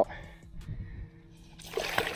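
A released snook splashing at the water's surface beside a small boat as it kicks away, near the end. Before it come a few faint low knocks.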